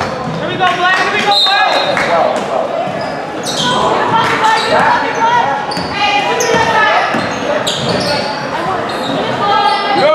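A basketball being dribbled on a hard indoor court during play, short sharp bounces among several voices calling out in a large gym.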